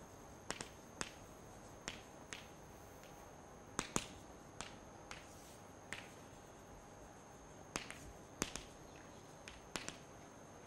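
Chalk clicking and tapping against a blackboard while writing: irregular sharp clicks, a dozen or more, loudest about four seconds in and again near eight and a half seconds.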